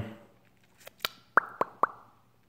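Mouth sounds: a couple of faint clicks, then three sharp tongue clucks in quick succession, each a short pop.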